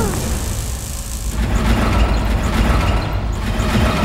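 Cartoon sound effect of a giant metal wheel rolling over the ground: a loud, steady low rumble with a grinding, ratcheting mechanical clatter.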